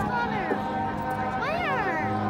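Marching band holding a sustained chord. Twice, at the start and again about one and a half seconds in, a high meow-like sound slides up and back down in pitch over it.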